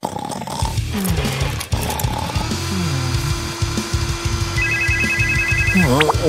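Cartoon background music with a steady beat. From about halfway a vacuum cleaner's steady hum joins in, and near the end there is a quick run of high beeps.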